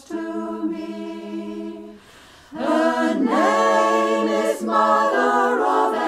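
Choir singing a cappella: a held chord for about two seconds, a brief breath, then a louder sung phrase with the pitch moving.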